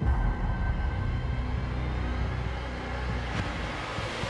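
Horror trailer score: a low rumbling drone that starts suddenly, with a thin sustained tone above it and a swell of noise rising toward the end.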